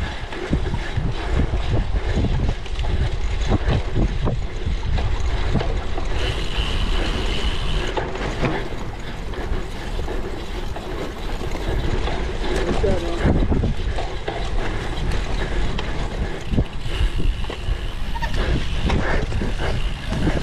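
Cyclocross bike rolling fast over bumpy grass, with a steady rumble of wind buffeting the camera microphone and frequent rattles and knocks from the bike as it jolts over the ground.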